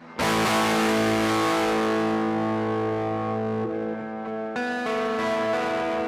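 Kramer Pacer Classic electric guitar on its neck humbucker, tone up full and volume rolled down a little, played through a driven amp: one chord struck at the start and left to ring, then two more chords about four and four and a half seconds in. The overdrive is cleaning up nicely as the volume comes down, a sign of the newly fitted volume pots.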